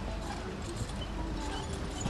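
Hoofbeats of a four-in-hand pony team trotting on a sand arena surface.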